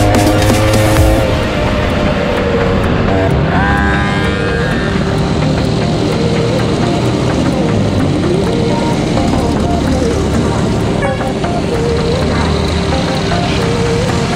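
Small two-stroke stand-up scooter engine running under a haze of road and wind noise, its pitch rising and falling with the throttle and climbing in a rev about four seconds in. Background music plays over it.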